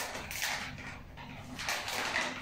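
Dry-erase marker squeaking in a few short strokes on a whiteboard, drawing a circle, over a low steady room hum.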